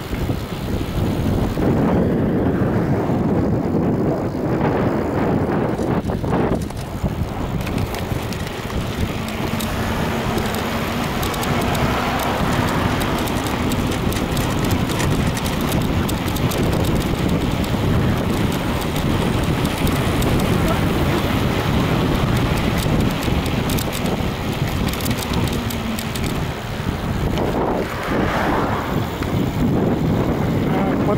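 Steady wind rush on the microphone of a camera carried on a moving bicycle, with rolling road noise underneath.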